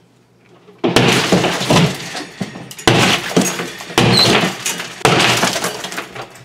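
Drywall being smashed through: four hard blows, the first about a second in, each followed by the crackle of gypsum board crumbling and its paper facing tearing.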